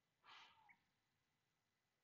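Near silence: room tone, with one brief faint hiss-like sound about a quarter second in.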